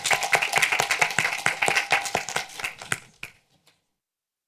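Audience applauding with dense hand-clapping, thinning out and then cutting off about three and a half seconds in.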